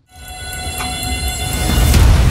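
Score-reveal suspense sound effect: a sustained, horn-like synth chord over a low rumble, swelling steadily louder from near silence as it builds toward the reveal.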